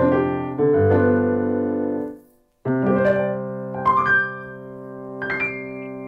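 Roland LX706 digital piano played at its maximum volume through its built-in speakers: sustained chords, a brief break just after two seconds in, then a held chord under a higher melody of single notes.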